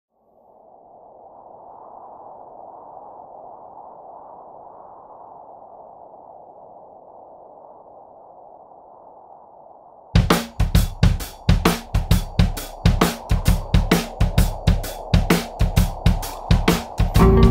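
Song intro: a soft, muffled wash of noise swells in and holds for about ten seconds. A drum kit then comes in abruptly, playing a busy, driving beat.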